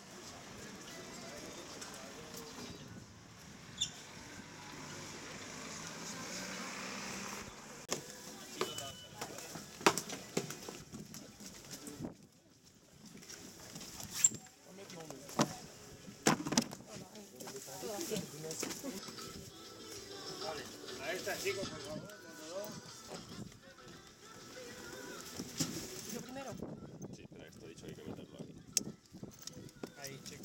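Indistinct background voices with faint music, broken by a few sharp knocks in the middle.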